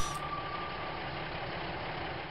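Cartoon monster truck engine idling steadily, as a sound effect. A held note of music fades out under it in the first second.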